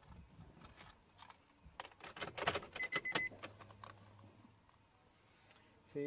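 Keys jangling with rattling clicks, then a short high electronic beep and a low steady hum lasting about two seconds, as the car's power is switched on to test the newly fitted LED footwell light strip.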